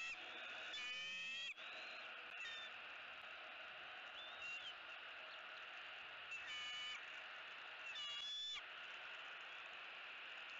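Bird calls: three short pitched calls, each under a second, near the start, around seven seconds and around eight seconds, with a couple of briefer notes between, over a steady faint outdoor background.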